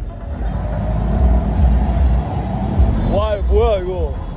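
A taxi's engine running close by against a heavy low rumble of street noise. A voice exclaims near the end.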